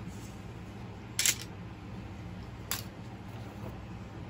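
Two short clicks from objects being handled, the first about a second in and the second near three seconds, over a faint steady hum.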